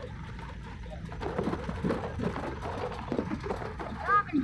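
Steady low rumble of a moving vehicle heard from inside it. From about a second in, a run of short, low-pitched sounds rises over the rumble.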